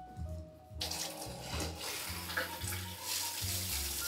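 Square rain shower head with an inline filter capsule, turned on about a second in and then spraying water steadily onto the tiles.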